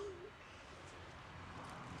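A short, low hooting bird call right at the start, then faint outdoor background.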